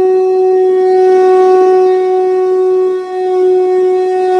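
A blown conch shell (shankh) sounding one long, steady horn-like note, with a brief dip about three seconds in before the note swells again.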